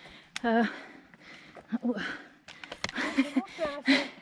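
A woman's voice: a drawn-out hesitation 'euh' near the start, then short breathy vocal sounds and a stretch of voice near the end, with a few faint sharp clicks in between.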